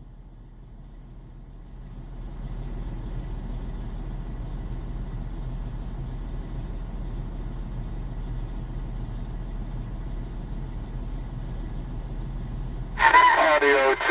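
Steady low rumble of truck background noise carried over a CB radio link and heard through the receiving radio's external speaker. It grows louder about two seconds in and holds steady until a man's voice starts near the end.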